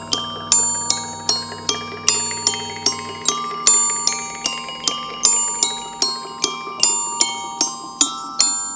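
Live instrumental music led by a glockenspiel struck with mallets: a repeating figure of bright ringing notes, about two to three a second, over held lower tones. The deepest of the held tones drops out about three seconds in.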